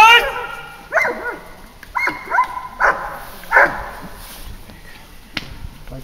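A German Shepherd grips a helper's padded bite sleeve in protection work. Over the struggle come loud, short pitched shouts: the loudest right at the start, then four or five more over the next few seconds. A single sharp smack comes about five seconds in.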